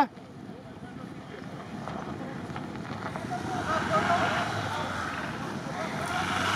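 Jeep Wrangler Rubicon with a 2.0-litre turbo four-cylinder, its engine and tyres running as it backs down an icy snow slope after failing to climb, the sound growing steadily louder as it comes nearer. Wind noise on the microphone.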